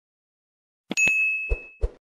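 Subscribe-animation sound effects: about a second in, a mouse-click double tick followed by a bright notification-bell ding that rings and fades over most of a second, then two soft low thuds near the end.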